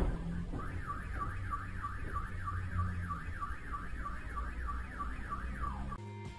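A sharp knock, then a car alarm sounding a repeated up-and-down whooping tone, about three sweeps a second, starting just after the knock and set off by it. A steady low vehicle rumble runs underneath.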